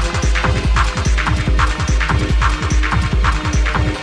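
Techno track in a DJ mix: a pounding kick drum over heavy sub-bass, with bright hand-clap or hi-hat hits on a steady four-to-the-floor beat.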